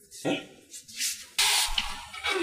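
A voice says "okay, eh?", then about one and a half seconds in a loud, even hiss starts suddenly and holds.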